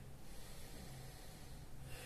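Faint breathing of a person holding a standing yoga pose, a soft noisy rush that eases near the start and again near the end, over a steady low hum.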